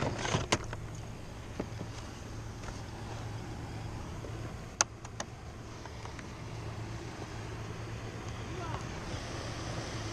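Steady low drone of a nearby motorboat's engine, with a few short sharp clicks and taps as a fish is handled on a kayak's measuring board, the sharpest about five seconds in.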